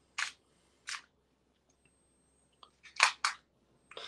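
Jig heads and a plastic tackle box being handled as one hook is picked out: short clicking rattles, one near the start, one about a second in, and a quick pair about three seconds in.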